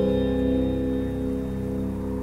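Music: a sustained low chord held through and slowly fading.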